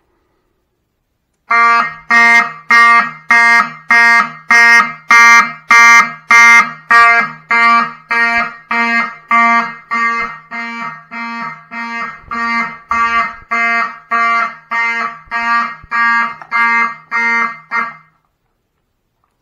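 Fire alarm horns sounding in alarm after a manual pull station has been pulled. The horns start about a second and a half in and pulse steadily at about three blasts every two seconds.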